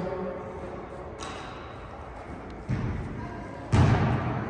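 Basketball thuds echoing in a gym: a soft one a little before the end, then a louder one just before the end.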